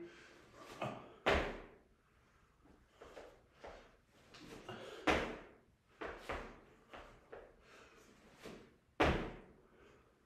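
Seated jumps off a weight bench: repeated thuds as the feet land on the gym floor and the body sits back down onto the bench, the three loudest about four seconds apart, with softer knocks and shuffles between.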